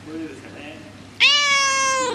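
Domestic cat giving one loud, drawn-out meow that starts just over a second in and holds a steady pitch for about a second.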